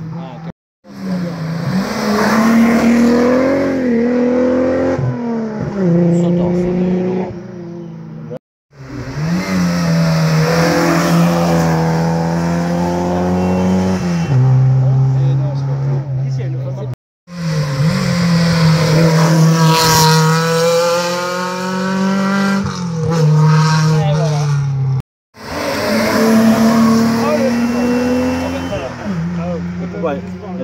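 Historic competition cars climbing a hill-climb course, engines revving hard, rising in pitch and dropping back with each gear change, one car after another. The sound breaks off to silence for a moment four times.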